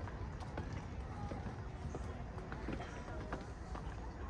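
Footsteps on a paved stone path, a string of irregular short taps, with indistinct voices of people in the background over a low steady rumble.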